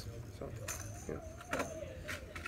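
Light jingling and clinking of packaged fishing lures being handled, with a sharp click near the end.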